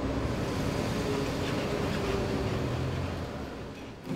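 City street traffic: a steady rumble of vehicle engines and road noise, easing off slightly near the end.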